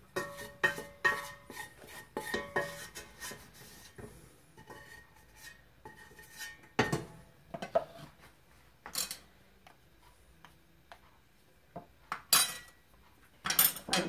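Wooden spatula scraping and knocking against a stainless steel pot while scraping out a cooked flour-and-ghee roux, the pot ringing faintly; a quick run of strokes in the first three seconds, then a few separate knocks and clatters as the spatula is tapped on a blender cup and set down on a plate.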